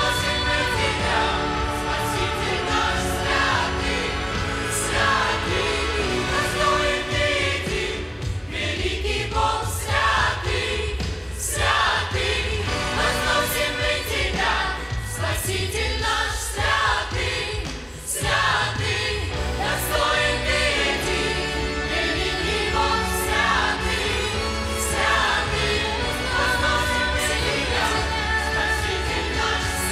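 A church choir sings a worship song, led by a female soloist on a microphone, over instrumental backing with a steady bass. The low accompaniment drops back for a stretch in the middle, then returns in full.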